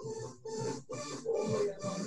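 A woman breathing hard, with short voiced exhales about three a second in rhythm with her jumping jacks and kicks.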